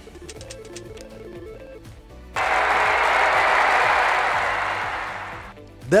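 Game-show style background music, then about two and a half seconds in a sudden loud burst of recorded applause that fades over about three seconds.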